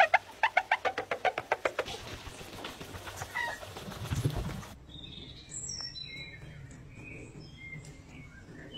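A palm rubbing over clean, glossy car paint, squeaking in a quick run of about eight squeaks a second for the first two seconds, then a single thump. After a sudden change about five seconds in, small birds chirp intermittently.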